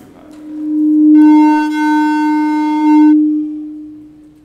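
A loud, steady, single-pitched electronic tone. It swells in over about a second and turns harsher and brighter in the middle, then drops back and fades away near the end.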